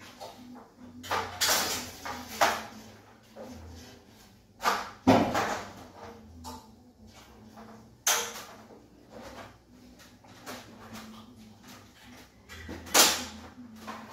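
Aluminium folding ladder being handled, extended and set against a wall: a series of metal clanks and knocks, the loudest about five seconds in and another near the end.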